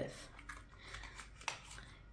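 Faint handling of a small cardboard box being opened: light rustling with a few soft clicks, the sharpest about one and a half seconds in.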